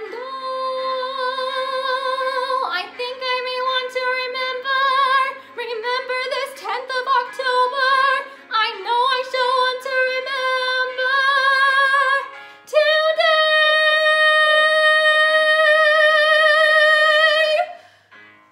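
A young woman singing a musical theatre song solo, with vibrato on the sustained notes. Near the end she holds one long note for about five seconds, then stops.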